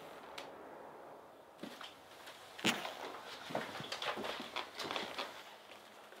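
A sharp knock about two and a half seconds in, then an irregular run of clicks and taps for about three seconds, like hard-soled footsteps and objects being handled.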